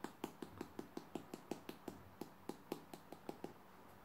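Faint, quick light taps on a small plastic pot of rooting hormone powder, about five a second, knocking the powder out into its lid; the tapping stops about three and a half seconds in.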